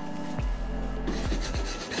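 Block plane shaving the sawn edge of a thin oak board, a rasping scrape that comes in about a second in, over background music.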